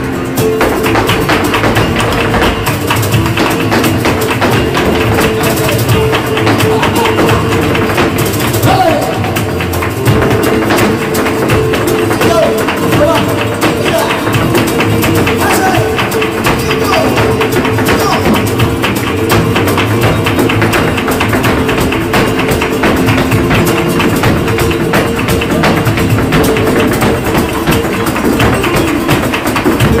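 Live flamenco: Spanish guitar playing steadily under a dancer's rapid percussive footwork, dense sharp heel-and-toe strikes on the stage.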